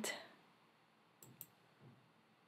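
Two faint computer mouse clicks a little over a second in, otherwise near silence.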